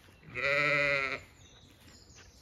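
A Zwartbles sheep bleating once: a single quavering call about a second long.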